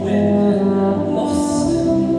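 Euphonium playing sustained notes, stepping up to a higher note near the end, over a recorded accompaniment from stage speakers.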